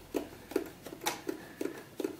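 A series of light, irregular clicks and taps, about six in two seconds and the sharpest about a second in, from hands working a Brother SE-400 sewing machine at its needle plate and feed dogs.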